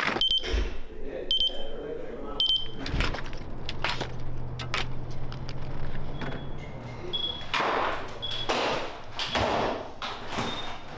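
Splitboard halves worn as skis clacking and scraping on wet pavement in a run of sharp clicks, three of them about a second apart, then a door being opened near the end.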